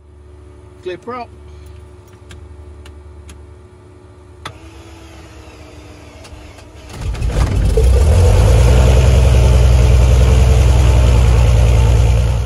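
A quiet low hum with a few light ticks, then about seven seconds in a Cessna 182's piston engine starts, builds quickly and runs loud and steady.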